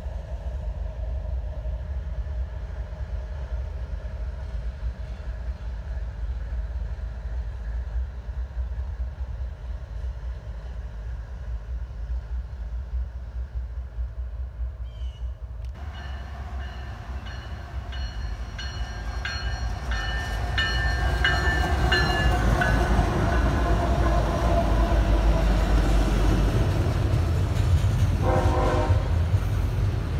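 Diesel locomotives rumbling steadily across a bridge; then a westbound Union Pacific intermodal train sounds its horn in several blasts about halfway through and passes close by, the rumble of its locomotives and double-stack container cars growing louder.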